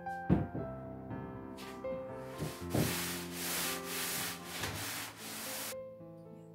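A wooden panel knocks twice against a surface, then a cloth rubs back and forth over the wooden board in quick strokes, about two to three a second, wiping dirt off it before paper is stretched on it. Background music plays underneath.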